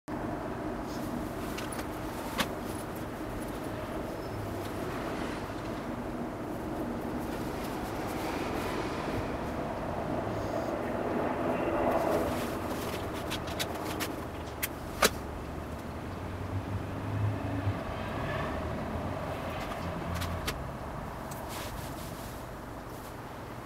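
Steady low rumbling background noise that swells about halfway through, with scattered sharp clicks and rustles.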